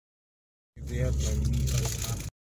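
Silence, then about three-quarters of a second in, car cabin noise cuts in suddenly: a steady low engine-and-road rumble heard from inside a car.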